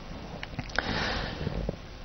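A man drawing a soft breath in through the nose, with a few faint clicks, just before speaking.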